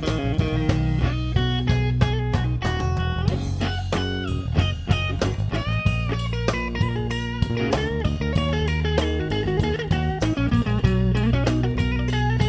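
Blues-rock band playing an instrumental passage: a lead electric guitar solo with bent notes over bass guitar and a drum kit keeping a steady beat.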